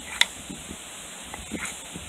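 A wooden rolling block pushed back and forth over a cotton fire roll on a slab of shale to compact it: a dry rubbing with a sharp knock of wood on stone just after the start and a few faint strokes later. Steady wind noise on the microphone underneath.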